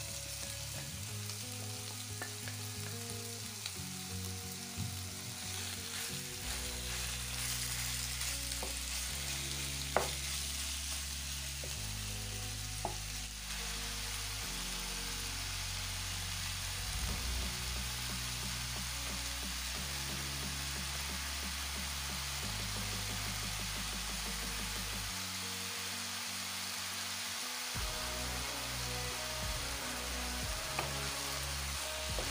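Diced raw chicken frying in hot oil in a nonstick frying pan: a steady sizzling hiss. A single sharp click comes about ten seconds in.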